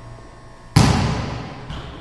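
Sound effect of an animated logo sting: one sudden hit about three-quarters of a second in, fading away over the next second, with a faint short ring near the end.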